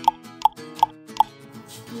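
Four short pop sound effects, evenly spaced about a third of a second apart, marking quiz answer options appearing one by one, over soft background music.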